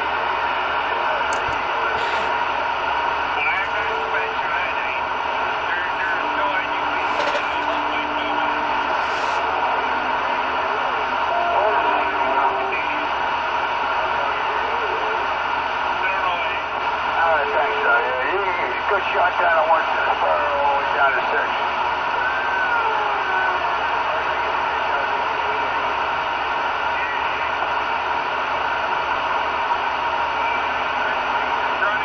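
CB radio receiver on channel 19 (27.185 MHz) putting out steady static, with faint, garbled voices from other stations breaking through and a few brief steady whistles, the voices strongest around the middle.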